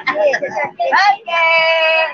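A person's voice: a quick burst of excited vocalising, then one long held sung or called note through the second half.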